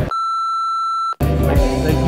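A single steady electronic beep, about a second long, that cuts off sharply; background music with a beat then comes in.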